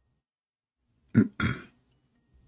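A man clearing his throat: two short, loud rasps a quarter of a second apart, a little past a second in.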